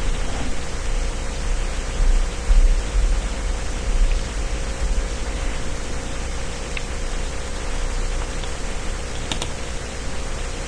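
Steady background hiss with a low hum and a faint steady tone from an open microphone in a quiet room, with a few faint clicks, a couple of them near the end.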